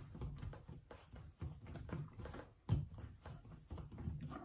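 Soft clay coil rolled back and forth under the palms on a worktable: faint, irregular rubbing and light thumps, with one sharper knock a little before three seconds in.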